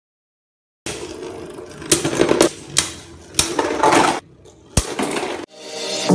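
Beyblade spinning tops rattling and clashing in a stadium, with several sharp hits. Near the end a rising whoosh leads into music.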